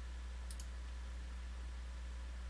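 A computer mouse button clicked twice in quick succession about half a second in, over a steady low electrical hum.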